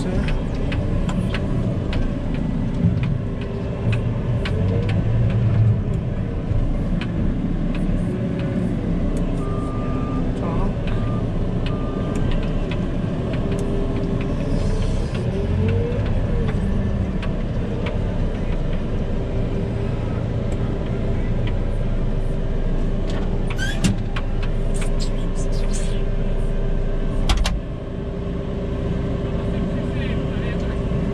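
JCB telehandler's diesel engine running, heard from inside the cab, with a hydraulic whine that rises and falls as the boom works and then holds a steady pitch. A few clicks come near the end, and the sound drops suddenly a few seconds before the end.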